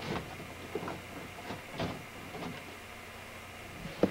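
A few light knocks and rubbing sounds from hands handling a computer monitor, over a low steady hum.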